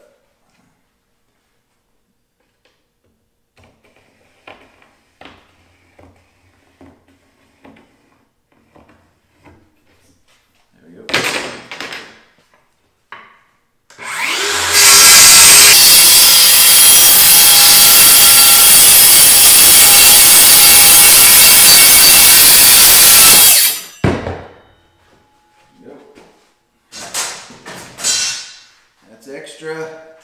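DeWalt 20V Max cordless circular saw cutting through a sheet of grooved plywood, starting about 14 seconds in and running steadily and loudly for about ten seconds before stopping with a sharp knock. Faint handling knocks come before the cut.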